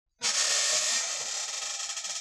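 Logo-intro sound effect: a loud hiss that starts suddenly and slowly fades.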